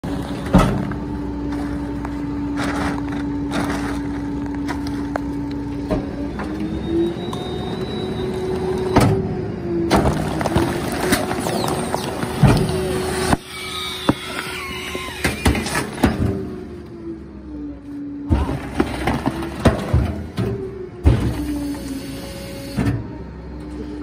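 A rear-loader garbage truck's hydraulic packer runs through a compaction cycle. Its steady pump whine steps up in pitch about a quarter of the way in and drops back about three quarters in. Trash bags and plastic bottles being crushed in the hopper give many sharp pops and high squeals, called good pops and squeals.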